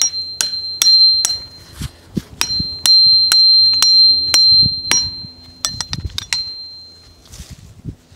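Hammer tapping a steel tree step into its pilot hole in a maple trunk: a run of sharp metallic clinks, about two a second, each with a high ringing tone. There is a brief pause a little over a second in, a few quicker taps near the end, and then the hammering stops.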